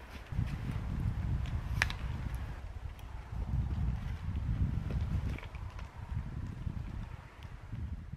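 Wind buffeting the microphone with an uneven low rumble, over a few light clicks and knocks of a camera and tripod being handled; one sharper click about two seconds in.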